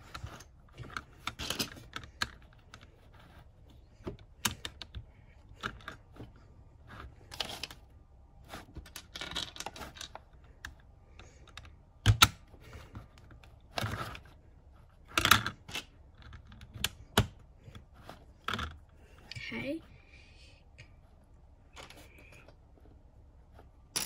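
Plastic building bricks clicking and clattering as grey plates are snapped together and small tiles pressed onto them. The clicks are irregular, with a few sharper snaps in the second half.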